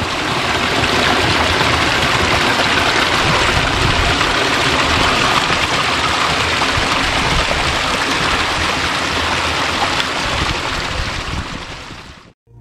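A small mountain stream running and splashing over granite rocks, a steady rush of water that fades in at the start and fades out near the end.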